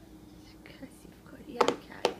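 Faint breathy, whisper-like sounds, then near the end a sharp plastic clatter of a small yogurt container knocked down onto a high-chair tray.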